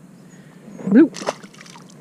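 A small bass dropped back into the water from a kayak, landing with one short splash just after a second in.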